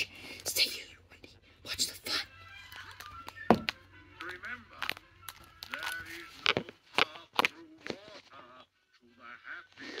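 Animated-film soundtrack: background music with short non-word vocal sounds and a series of sharp clicks. The loudest click comes about three and a half seconds in.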